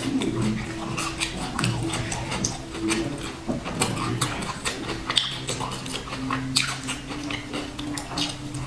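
Close-miked chewing of a sesame-coated cake: frequent small crackles, clicks and wet mouth smacks as she chews and bites, over low sustained tones.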